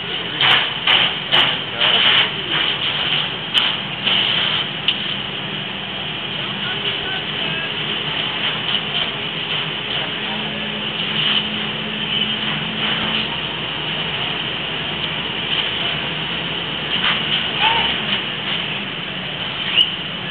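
Steady drone of fire-truck engines running at a fire scene, with indistinct voices coming and going, most often in the first few seconds.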